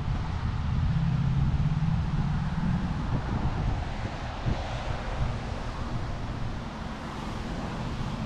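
Wind buffeting a handheld action camera's microphone, a rough fluctuating rumble, with a low steady hum for the first few seconds that fades by about three seconds in.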